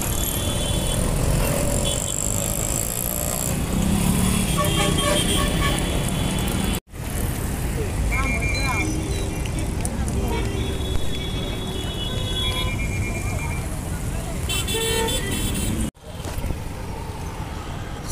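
Busy city street traffic: vehicles running with repeated short car and bus horn toots, and voices of passers-by. The sound cuts out abruptly for a moment twice.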